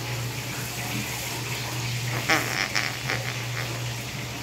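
Steady kitchen background noise: a low hum with running water. A little over two seconds in, a baby gives a short, squeaky squeal.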